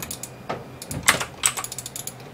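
Computer keyboard keystrokes: a few separate taps, then a quick run of lighter clicks near the end.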